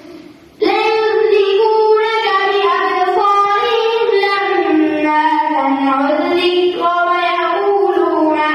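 A boy reciting the Quran into a microphone in a melodic, drawn-out chanting style with long held notes, picking up again after a short pause for breath at the start.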